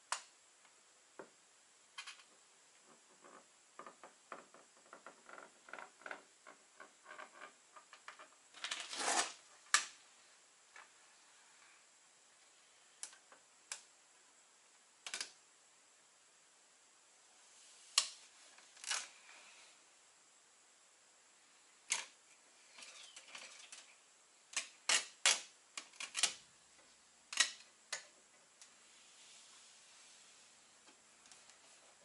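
Scattered small clicks, taps and short rustles of hands pressing a self-adhesive chrome-look trim strip onto a truck cab's side panel. A run of light ticks comes early, a longer rustle about nine seconds in, and a cluster of sharper taps near the end.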